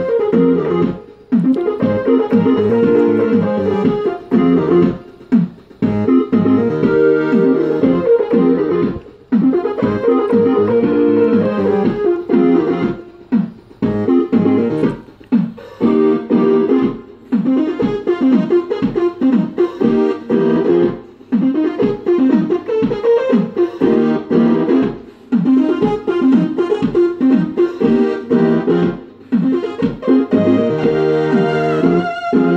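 Homemade keytar synthesizer playing a keyboard tune with chords over its own automatic accompaniment, with a steady drum-machine beat underneath. The music breaks off briefly several times between phrases.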